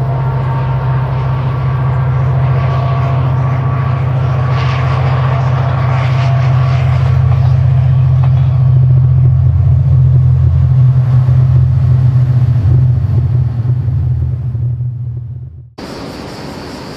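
An engine running with a steady low hum that swells toward the middle and then fades, cut off sharply near the end.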